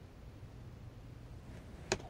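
Faint steady low hum of room noise, with one sharp click or knock near the end.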